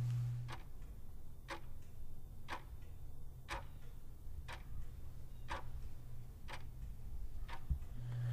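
A clock ticking faintly and evenly, about one tick a second. A low hum stops about half a second in.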